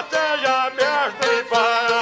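Albanian folk song: a man singing ornamented phrases whose notes bend in pitch, accompanied by a plucked çifteli, the two-string long-necked lute.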